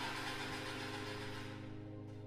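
Car engine running just after the ignition key is turned, fading down under soft, sustained background music.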